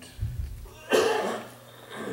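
A single sharp cough about a second in, louder than the surrounding speech, after a short low thump.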